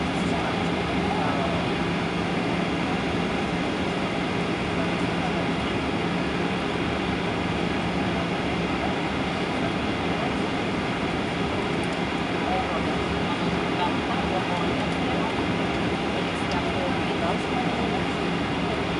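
Cabin noise of a Boeing 737-800 taxiing at low thrust, heard from inside the cabin at a window seat: its CFM56-7B turbofans run at a steady idle with an even rushing noise and a steady low hum, with no spool-up.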